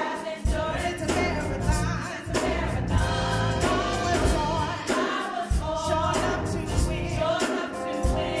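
Gospel vocal group of women singing together into microphones, lead and backing voices in harmony, over an instrumental backing with a steady beat.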